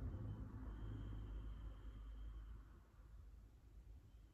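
Quiet room tone: a low hum with a faint hiss and a thin high tone, getting softer about three seconds in.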